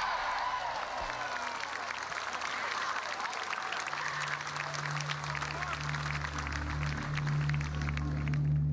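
Golf gallery applauding and cheering after a holed putt, a dense patter of many hands clapping. Low music comes in about halfway through.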